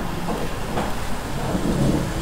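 Steady background noise with a low rumble, without clear events.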